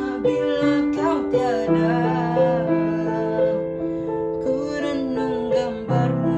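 Digital piano playing sustained chords, with a boy's voice singing the melody over it.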